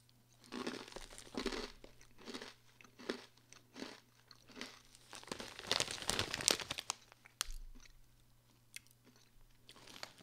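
A mouthful of hard pretzel pieces, Snyder's of Hanover Hot Buffalo Wing and Buttermilk Ranch Flavor Doubles, being chewed: irregular crunches that come thickest in the first seven seconds, then die away to a few faint ones.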